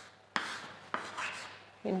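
Chalk writing on a blackboard: two short strokes about half a second apart, each starting sharply and fading.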